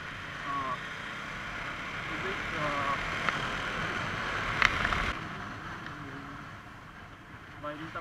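Riding noise from a Bajaj Dominar 400 motorcycle under way: wind rushing over the microphone over the steady hum of the single-cylinder engine and tyres. A sharp click comes a little past halfway, and the noise eases off for the next couple of seconds.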